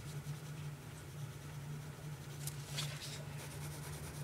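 Graphite pencil scratching and shading on sketchbook paper, with a few quick strokes near the end, over a steady low hum.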